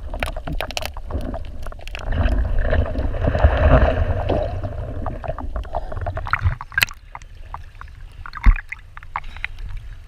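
Water splashing and sloshing with many small crackling clicks. It swells louder about two seconds in and eases off after five, over a steady low rumble, with a single sharp knock near the end.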